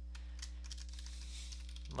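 Faint computer keyboard keystrokes as a password is typed in, over a steady low electrical hum.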